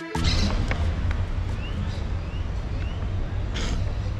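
Outdoor ambience: a steady low rumble with a few faint, short rising chirps in the middle and a brief hiss near the end.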